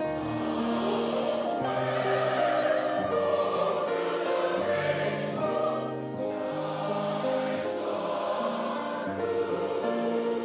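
Pops chorus singing slow, held chords, with a few sibilant 's' sounds cutting through.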